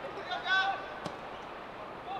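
A football being kicked: one sharp thud about a second in, just after players' shouts.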